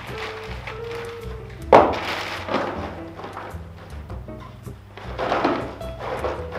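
Background music, with a cardboard gift box being handled over it: a sharp thunk about two seconds in, then rustling twice.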